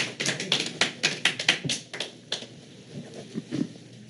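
A quick, irregular run of light taps and clicks, about four or five a second, thinning out after about two seconds.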